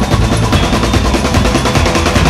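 Live rock band playing an instrumental passage: a fast, driving drum beat over bass and guitars, with no vocals.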